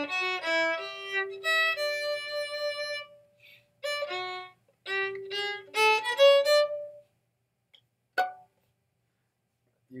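Violin played with the bow: a lick used as a tag to end a song, quick notes that settle on a held note, then a second run of notes ending on a longer held note. A single short note sounds about eight seconds in.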